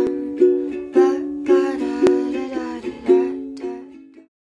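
Background outro music with a plucked-string chord struck about every half second, fading toward the end.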